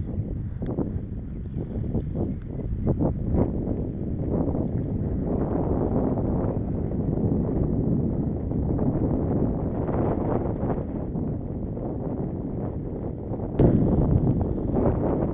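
Wind rumbling on the microphone of a camera riding along on a moving bicycle, with a dull road rumble underneath. There are a few light knocks in the first few seconds and a sharp click shortly before the end, after which it gets louder.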